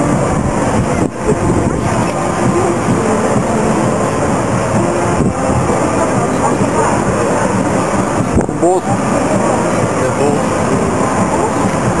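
Indistinct voices of several people mixed into a loud, steady rushing noise, with no clear words.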